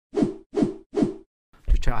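Three identical short whooshing hits in a quick row, each starting sharply and dying away, about 0.4 s apart: a repeated intro sound effect.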